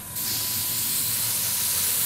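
Gravity-feed airbrush spraying, a steady hiss of air with a brief break right at the start.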